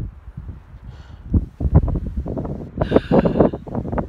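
Gusty wind buffeting a phone's microphone, an irregular low rumble that swells and dips, loudest in the second half.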